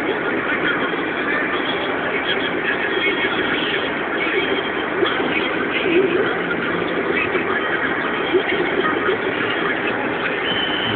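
A car driving on a freeway, with steady road and engine noise.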